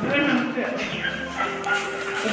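Indistinct voices talking over music playing in the background.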